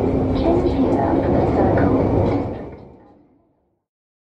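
Ambience inside a London Underground train carriage: a steady rumble and hum with voices in it, fading out to silence about two and a half seconds in.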